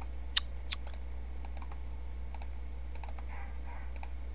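Scattered clicks of a computer keyboard and mouse during drawing, one sharper click about half a second in, over a steady low hum. Near the end, faint muffled dog barking comes from elsewhere in the house.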